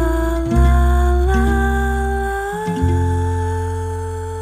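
Closing bars of a pop song: a woman's voice sings "fa la la la la" in notes that step upward in pitch, over acoustic guitar and low bass notes. It settles on a long held note near the end.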